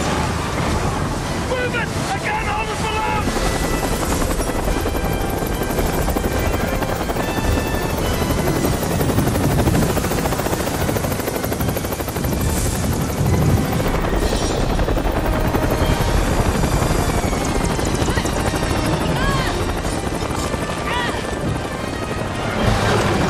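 A hovering helicopter's rotor and engine running loudly and steadily, with voices heard at times over it.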